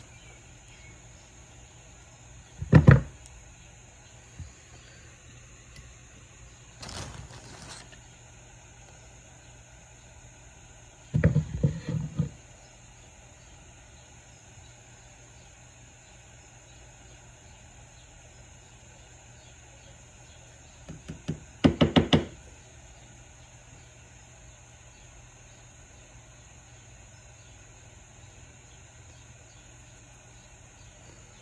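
Scattered knocks and taps of metal pliers and small jars on a wooden workbench while jig heads are dipped in powder paint. There is a single sharp knock, a short soft hiss, a short cluster of knocks, and later a quick run of several taps.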